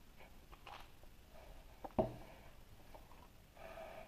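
Hard plastic toy horse being handled on a tabletop: faint rustling of fingers on plastic, one sharp knock about two seconds in as plastic meets the table, and a brief rubbing squeak near the end.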